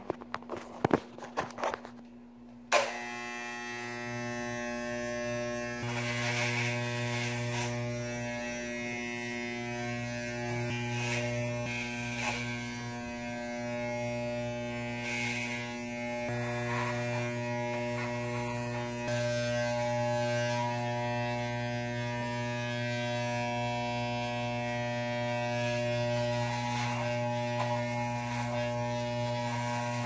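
Corded electric hair clippers: a few handling clicks, then the clippers switch on about three seconds in and buzz steadily with a low, even hum, the level shifting slightly now and then as they are moved over the head.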